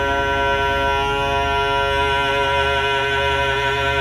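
Alto saxophone holding a long note inside a dense, steady chord of sustained tones, over a low rumble.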